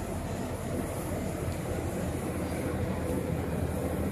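Steady low rumbling background noise with no distinct events, a little louder from about a second in.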